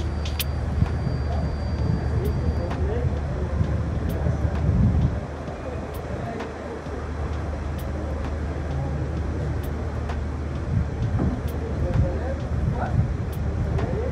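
A steady low hum with faint voices in the background and a soft tick about once a second.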